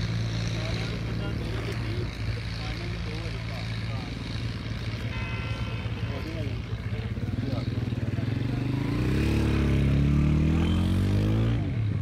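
An engine running with a steady low hum, then revving up in a rising whine from about eight seconds in, loudest just before it drops away at the end. A brief high tone sounds about five seconds in.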